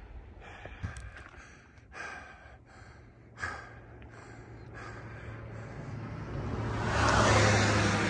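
A person breathing hard, with a string of short breaths about a second apart. In the second half a steady low hum and a rush of noise swell up, loudest near the end.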